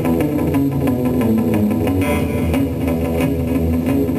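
Acoustic guitar played live in a steady, driving blues rhythm, picked notes and strummed strokes running on without a break.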